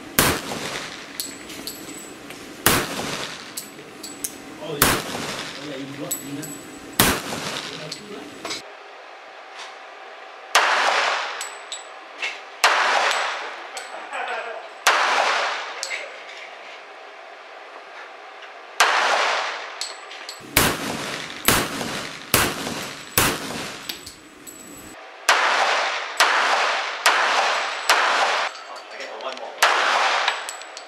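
Springfield Armory 1911-pattern semi-automatic pistol firing. Single shots come about two seconds apart, then quicker strings of four or five shots about a second apart later on, each crack with a short echoing tail.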